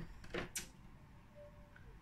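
Quiet room tone with a short soft click about half a second in, just after a brief low sound.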